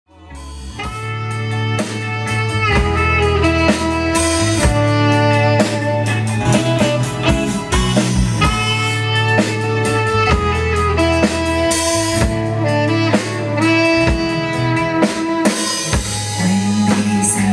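A live rock band plays an instrumental intro: a saxophone carries held melody notes over drum kit, guitars, bass and keyboards. The music fades in from silence over the first couple of seconds.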